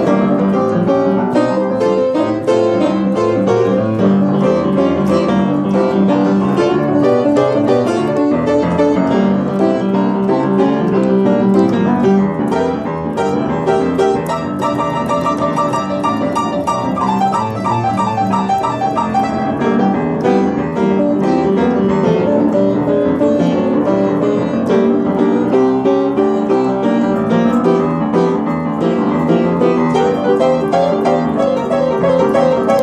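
Upright piano played energetically with both hands in a busy, continuous tune. About halfway through, the right hand plays a rapid, trill-like run of repeated high notes for several seconds.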